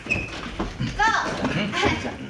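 Several people talking over one another in lively voices.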